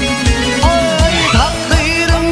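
Turkmen folk-pop song played on electronic keyboards over a recurring heavy kick-drum beat, with a melody line that slides in pitch.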